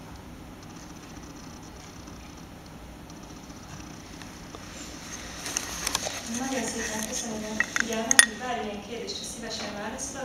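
Quiet room tone for about five seconds, then people begin talking among themselves, with several sharp clicks and clinks. The loudest click comes about eight seconds in.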